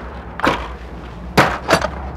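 Three short knocks and clunks from a motorhome's entrance door and entry step as someone steps in, the loudest a little past halfway, over a low steady rumble.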